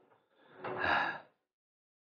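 A single short, breathy exhale from a person, under a second long, after which the sound cuts off to dead silence.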